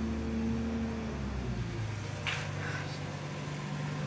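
A steady low mechanical hum, like a motor or engine running, that shifts to a lower pitch about a second in, with a brief soft noise just after the midpoint.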